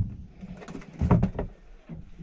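A gold spot trevally being put into a plastic tub: a couple of dull knocks about a second in as the fish lands and shifts against the plastic.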